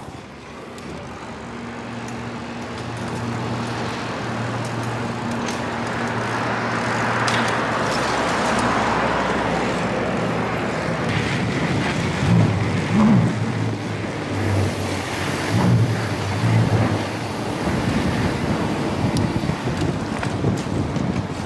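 Street noise: road traffic with low vehicle engine hums, and a rushing swell about seven to ten seconds in, as of a vehicle passing or wind on the microphone.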